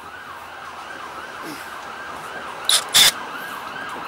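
A siren in fast yelp mode, its pitch rising and falling about four times a second, steady in the background. About three seconds in come two sharp, loud clacks.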